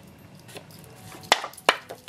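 Two sharp taps about a third of a second apart, from the cardstock being knocked on the work surface to shake off loose embossing powder.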